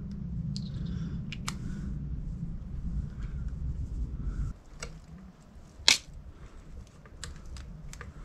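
Light clicks and taps of small brass engine parts being handled and fitted together, with one sharper click about six seconds in. A low rumble underneath stops about halfway through.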